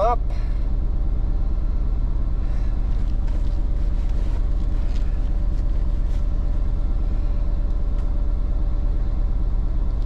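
Chevrolet rollback tow truck's engine idling steadily, heard from inside the cab; it has just been started and is idling while its oil pressure comes up.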